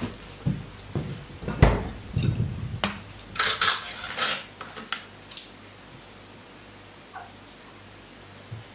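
Dishes and utensils being handled in a kitchen: a quick run of knocks and clinks over the first five seconds or so, then a quiet steady room background.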